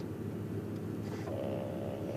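Steady low hum, joined about a second in by a steady buzz as a smart vibrator on a wooden table starts vibrating, switched on remotely from an attacker's phone without any confirmation on the device.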